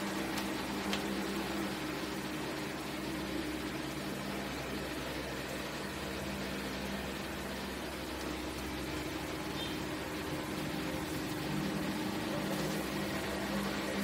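Steady low hum with faint background hiss: room tone with no distinct events.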